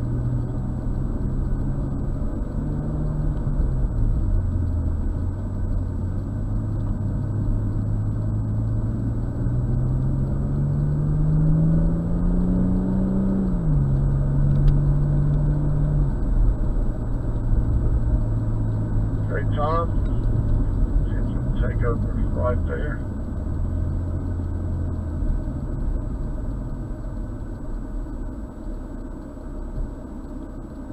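BMW M240i's turbocharged inline-six heard from inside the cabin while driving the course. Its pitch climbs under acceleration and drops sharply about halfway through. A few brief wavering squeals come from the tyres a little later, and the car slows near the end.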